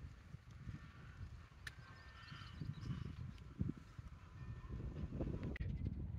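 Faint outdoor street ambience while walking with a phone: an uneven low rumble of wind and handling on the microphone, with soft footsteps.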